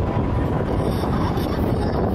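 Wind buffeting the microphone outdoors: a steady low rumble with no distinct events.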